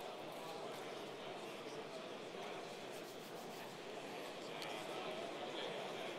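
Many men talking at once in pairs across a large, reverberant hall: a steady hubbub of overlapping conversation with no single voice standing out.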